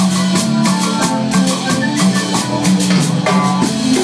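Live cumbia band playing: a drum kit keeping a steady beat under electric bass and guitar.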